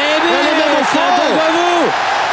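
Television football commentary: male commentators' voices over the steady noise of a large stadium crowd.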